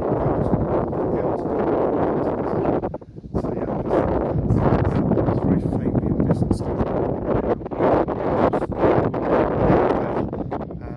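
Strong wind buffeting the microphone, a loud, gusting rush that eases briefly about three seconds in.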